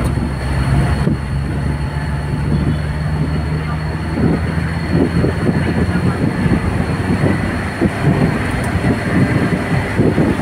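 Engine and road noise of a moving vehicle heard through an open side window, with a steady low engine hum that fades about seven seconds in. Gusts of wind buffet the microphone through the second half.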